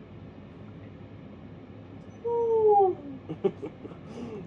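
A husky's "awoo": one slightly falling, drawn-out call about two seconds in, followed by a few short vocal sounds.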